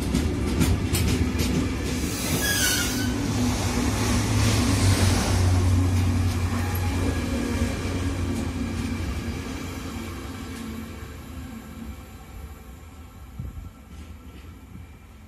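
Freight train of tank wagons rolling past close by, wheels rumbling and clacking over the rail joints, with a brief falling squeal about two seconds in. The rumble fades away over the second half as the last wagon passes.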